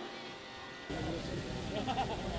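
A person's faint voice answering briefly from a distance, over outdoor background noise that comes up suddenly about a second in.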